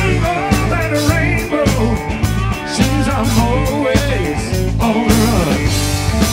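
Live blues-rock band playing an instrumental passage: drums and bass under a lead line of bent, wavering notes. The accompaniment shifts about five seconds in.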